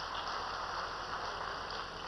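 Low, steady background noise of a large room: an even hiss with no distinct events.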